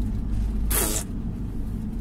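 Renault Master van on the move, heard from inside the cab: a steady low engine and road rumble, with a short hiss about three-quarters of a second in.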